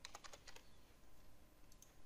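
Faint typing on a computer keyboard: a quick run of keystrokes in the first half-second as a password is entered, then two faint clicks near the end.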